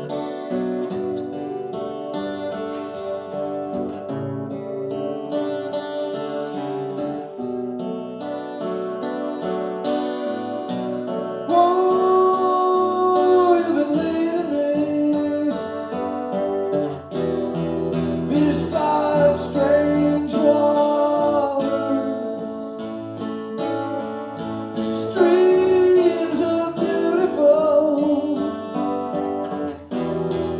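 Live solo song performance: acoustic guitar playing throughout, with a man's singing voice coming in at times.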